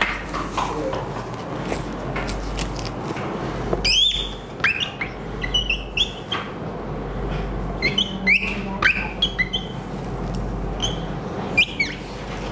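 Marker squeaking on a whiteboard in quick short strokes as words are written, starting about four seconds in.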